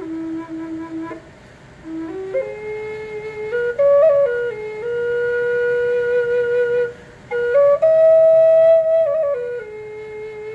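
Native American flute playing a slow melody of held notes that step up and down, with a short breath gap about a second in. A long steady note sits in the middle, and the highest, loudest note is held for about a second near the end before the line falls back.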